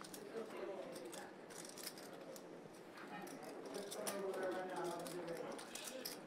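Faint poker-room ambience: low murmur of voices with scattered light clicks of poker chips being handled.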